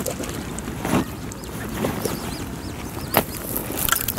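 Eurasian coot chicks peeping in short, high, arching notes, repeated several times a second, over a steady low rush of wind and lapping water. Two sharp knocks stand out, about one and three seconds in.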